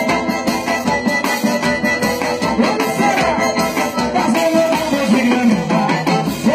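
Live forró band playing: accordion melody over a zabumba drum beat, loud and continuous.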